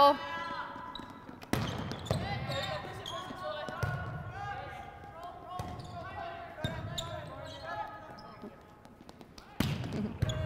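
Volleyball play on an indoor court: sharp slaps of hands and forearms on the ball every second or two as it is passed, set and hit back and forth, with players' voices calling in the background.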